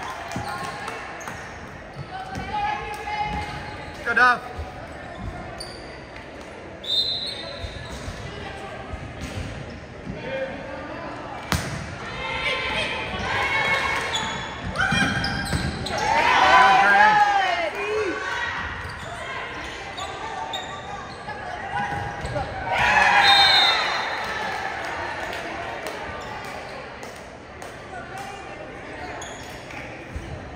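Volleyball rally in a large, echoing gym: sharp smacks of the ball being hit, short squeaks of shoes on the hardwood court, and players and spectators shouting and cheering. The shouting swells into two loud bursts, about halfway through and again a few seconds later.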